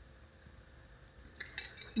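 Small metal wire whisk set down on a ceramic plate: a short run of light metallic clinks about a second and a half in.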